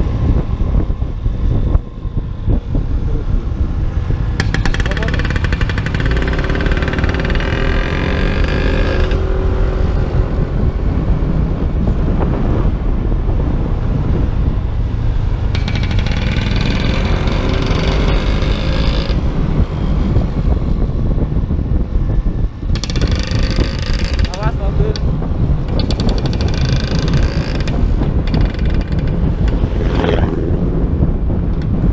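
Motor scooter riding at speed: wind buffeting the microphone over the engine's steady rumble. A higher droning tone comes and goes three times.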